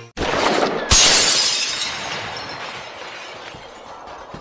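Shattering-glass sound effect: a short rising whoosh, then a sharp crash about a second in, followed by a shower of breaking-glass debris that fades away over about three seconds.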